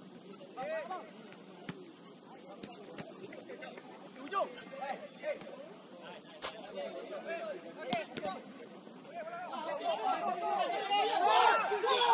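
Players shouting short calls to each other during a football match, with several sharp thuds of the ball being kicked; the shouts grow louder and overlap over the last few seconds.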